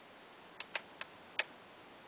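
Four light metallic clicks from a Mosin-Nagant's bolt being gently pressed closed on a headspace field gauge, which stops it short: the bolt not closing on the field gauge means the headspace is safe.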